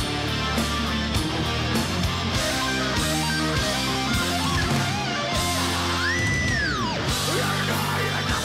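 Heavy metal band playing live: an instrumental passage with electric guitars, bass, keyboards and drums. About six seconds in, a high lead note slides up, holds and slides back down.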